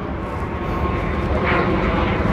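An airplane flying low overhead: a steady engine noise that slowly grows louder.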